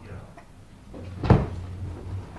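A single sharp knock of a wooden cabinet stereo console's lid being handled, about a second in, over a low steady hum.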